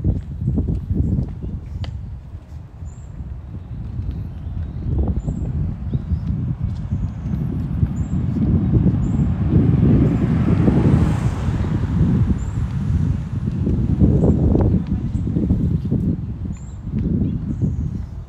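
Street ambience picked up by a phone microphone while walking: an uneven low rumble of wind buffeting the microphone, with a vehicle passing that swells and fades about ten seconds in.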